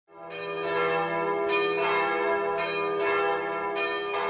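Church bells ringing, a new stroke every half second to a second, each ringing on into the next.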